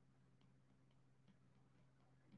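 Near silence: a faint steady room hum with a few soft, irregular ticks from a stylus tapping on a tablet's glass screen while a word is handwritten.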